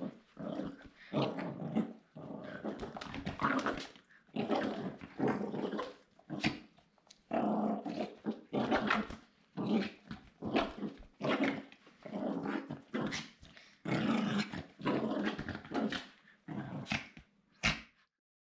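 Small dog play-growling in a long string of short growls, about one a second, with the odd bark among them, while it rolls on its back.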